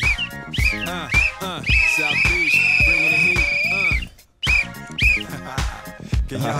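Referee's whistle blown in a few short toots, then one long wavering blast of about two seconds, then two more short toots, over upbeat music with a heavy beat. Everything cuts out briefly about four seconds in.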